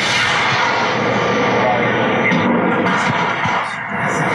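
A lightning-triggering rocket, a model-rocket-type H motor, launching from its launch tube: a sudden onset, then a loud, steady rushing noise, heard as the playback of a field recording.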